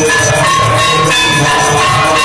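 Temple aarti music played live: ringing bells and jingling cymbals over a low drumbeat of about two strokes a second, loud and continuous.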